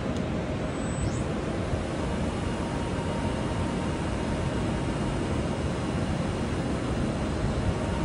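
Hurco TM-10 CNC lathe spindle running, spinning its empty three-jaw chuck: a steady whir with a faint constant whine.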